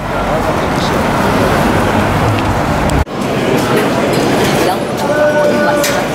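Busy street noise of road traffic passing, with people talking in the crowd around. About halfway there is an abrupt cut to a quieter scene of crowd chatter.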